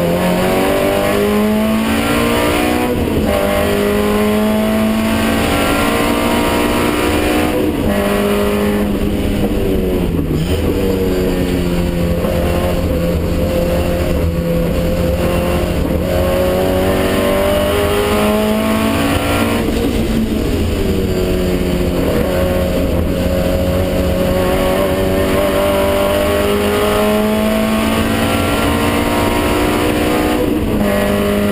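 Classic racing car's engine heard from inside the cockpit at full throttle on track, its revs rising and falling several times through the corners, with steady road and wind noise underneath.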